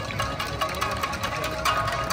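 Tsugaru shamisen ensemble playing, with sharp plucked strikes over held notes. The strikes come thicker and brighter near the end.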